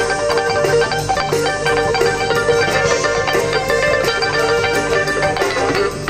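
Big band jazz played live through a PA, with an electric guitar out front over saxophones, brass and rhythm section.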